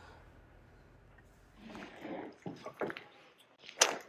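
Faint handling noises, a few soft knocks, then one sharp knock near the end, as a large composite panel is picked up.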